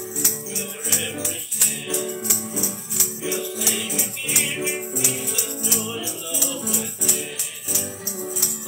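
A man singing a Christian song while strumming an acoustic guitar, over a steady beat of bright rattling strokes.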